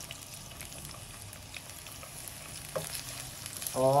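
Freshly added sliced onions sizzling steadily in hot ghee in a nonstick pan, stirred with a silicone spatula that gives a few faint scraping clicks.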